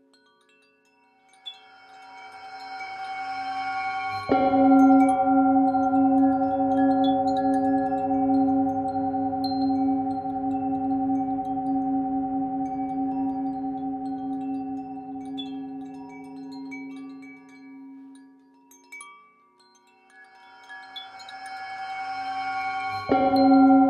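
Tibetan singing bowl: a swelling sound builds for a few seconds to a strike about four seconds in. The bowl then rings with a deep, slowly wobbling tone and higher overtones, fading out over about a dozen seconds. Wind chimes tinkle lightly throughout, and a new swell begins near the end.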